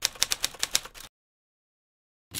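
Typewriter-style typing sound effect: rapid key clicks, about nine a second, that stop about a second in.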